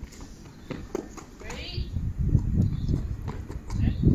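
Quick footsteps of a child running on concrete, short sharp taps, with wind rumbling on the microphone that grows stronger from about halfway.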